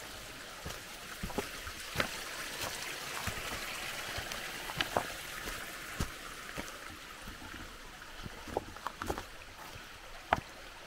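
A small mountain stream trickling steadily, with irregular sharp footsteps on a stony trail.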